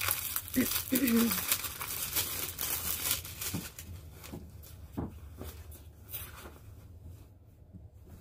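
Plastic bag crinkling and tearing as it is pulled open by hand, busiest in the first few seconds and then thinning to fainter rustles. A throat-clear comes about a second in.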